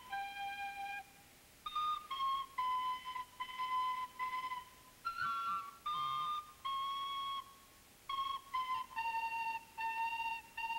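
Recorders playing a simple tune, one held note after another, with short pauses between phrases at about one second in and again near the end.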